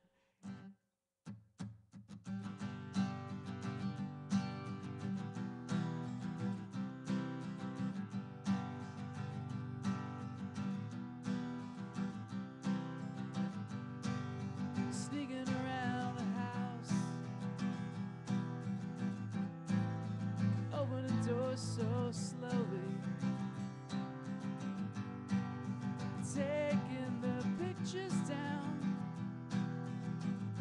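Acoustic guitar with a pickup, a few single plucks and then steady chord strumming from about two seconds in, playing a song's opening.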